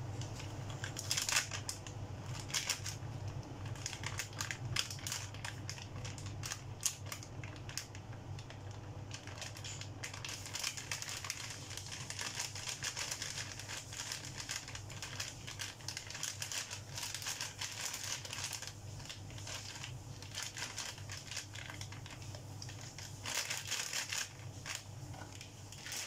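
A thin plastic bag of corn flour crinkling and crackling in irregular bursts as it is squeezed and shaken to tip the flour out, over a steady low hum.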